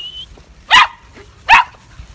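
Two short, sharp barks from small, excited dogs playing, about a second apart.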